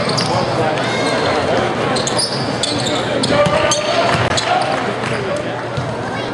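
A basketball bouncing on a hardwood court during play, over the steady chatter and voices of an arena crowd echoing in a large hall.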